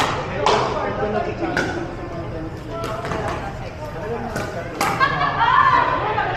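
Pickleball rally: paddles hitting the hard plastic ball, about eight sharp pops at irregular spacing. Voices underneath, louder near the end.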